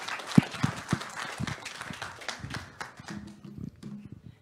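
Audience applauding, a dense patter of clapping that thins out and fades in the second half.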